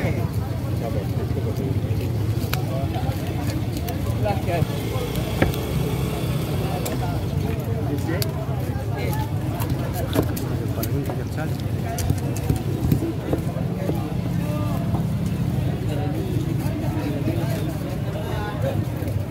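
A large knife chopping and slicing fish on a wooden chopping block, with sharp knocks at irregular intervals as the blade hits the wood. Behind it is the chatter of a busy market crowd and a steady low rumble.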